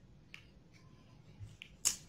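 Near silence: room tone with a couple of faint ticks and one sharp click shortly before the end.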